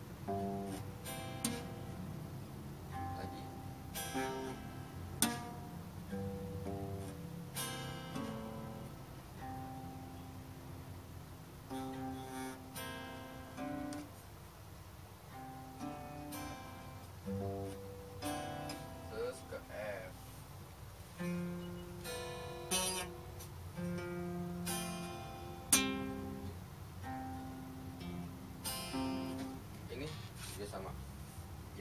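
Nylon-string classical guitar strummed one chord at a time, slowly and unevenly, with pauses between strums while a beginner's chord shapes change. Held single notes ring between some strums.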